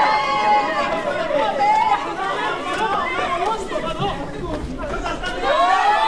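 A group of voices shouting and calling over one another in a scuffle, with long drawn-out cries at the start and again near the end.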